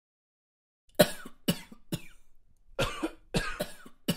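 A person coughing: about six short, sharp coughs in two quick fits, starting about a second in.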